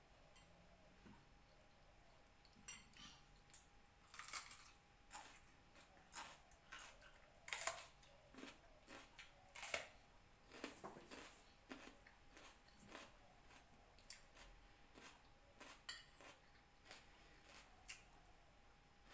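Eating at the table: a spoon tapping and scraping on a plate, with chewing, as scattered light clicks and taps that start a few seconds in and go on irregularly.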